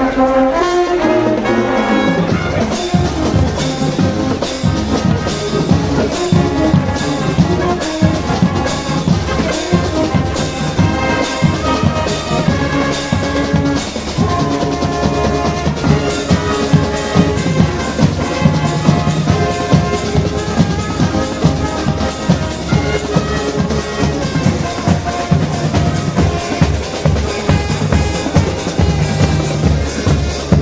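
Brazilian marching band (banda marcial) playing: a brass section of trumpets, trombones and sousaphones holds sustained chords over marching bass drums and snares keeping a steady beat.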